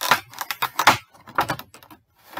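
Hard plastic Pop protector case and figure box being handled: a quick run of clacks, taps and rustles, loudest just under a second in, tapering off near the end.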